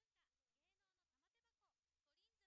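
Near silence, with very faint voices chatting underneath.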